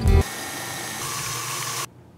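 Electric stand mixer motor running steadily while churning cream into butter, then switched off suddenly near the end. A guitar tune ends just as it begins.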